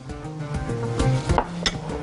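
Background music with steady held notes, and a few light knocks and clinks of kitchen dishes and utensils in the second half as a small dish is picked up beside a glass mixing bowl.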